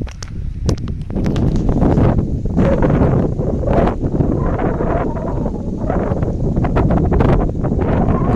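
Strong wind buffeting the microphone, a dense gusting rumble throughout, with several sharp clicks scattered across it.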